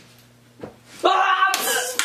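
A single light smack about two-thirds of a second in, then a person yelling loudly from about a second in.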